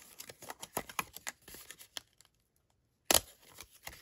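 Cardstock paper strips being handled: crisp rustling and small clicks of paper, a short pause, then one sharp tap a little after three seconds in.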